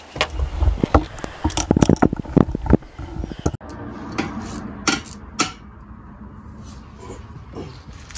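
Quick clattering and clicking of metal recoil-starter parts and hand tools being handled. It cuts off abruptly about three and a half seconds in, and a few separate sharp tool clicks follow as the starter is fitted to the ATV.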